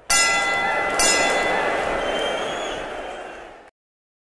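Sound effect of an animated subscribe end card: two sharp hits about a second apart, each setting off ringing tones that fade away. It cuts off abruptly near the end.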